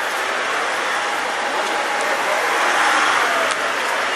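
Street traffic noise with a taxi van passing close by. A steady rush of vehicle sound swells slightly about three seconds in.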